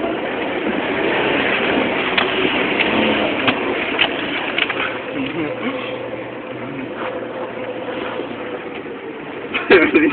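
A Jeep's engine running with trail noise inside the cab as it crawls over a rough, muddy offroad track, with scattered knocks and rattles from the bumps.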